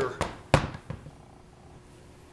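One solid thump about half a second in, with a light click just before and another just after: a BB gun and its metal plunger assembly being handled and set down on a workbench.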